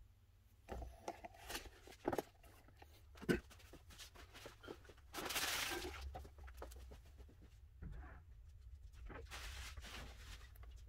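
Kindling catching fire in a closed wood-burning stove, with faint, scattered crackles and pops. A louder rustle comes about five seconds in and lasts about a second.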